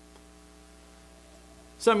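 Faint, steady electrical hum made of several even tones; a man's voice starts speaking right at the end.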